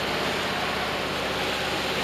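Steady rushing of flowing water.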